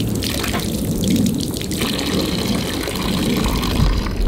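Water running from a garden hose and splashing onto the ground in a steady stream.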